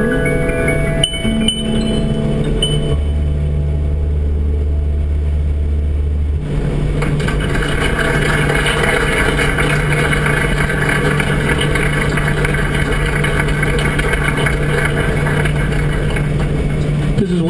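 Music from the car's radio over steady road noise inside the moving car. Held notes in the first few seconds change abruptly, about six seconds in, to a fuller, steadier sound.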